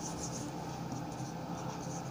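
Marker pen writing on a whiteboard: faint, quick scratching strokes.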